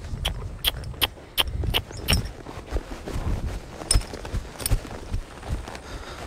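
Horse trotting under a rider: metal tack clinks in an even rhythm of nearly three a second, then less regularly, over low thuds and rustle.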